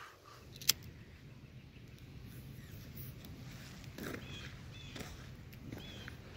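A single sharp click of a disposable lighter being struck, as a joint is lit. In the second half a bird calls a few short, falling notes.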